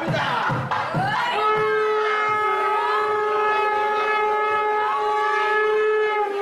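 Conch shell (sangu) blown in one long, steady note that begins about a second in, after a short break filled with noisy rumbling.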